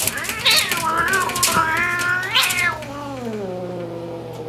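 A cat yowling in a territorial standoff with another cat: one long, drawn-out call that wavers in pitch, then falls steadily toward the end.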